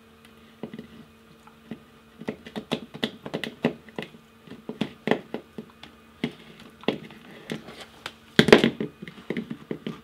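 Siberian husky chewing on a rawhide: irregular crunches and clicks of teeth on the hide, with a louder burst of crunching late on.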